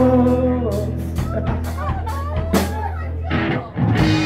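Live rock band playing: electric bass holding steady low notes under electric guitar and drum kit, with cymbal strikes. The music drops briefly just before the end, then comes back in full.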